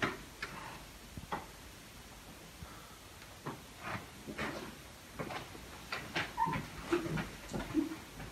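A quiet room with scattered faint knocks, clicks and rustles of people moving about, irregularly spaced.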